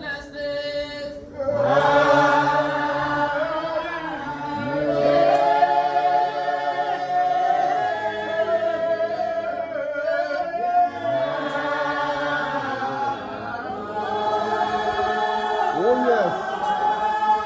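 A small congregation of mostly men's voices singing a hymn together without accompaniment, in long held phrases with short breaths between them.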